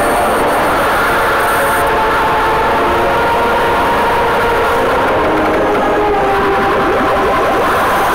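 Loud, steady sound effect from an animated cartoon's soundtrack: a dense wash of noise with several droning tones layered in, like a heavy machine or train.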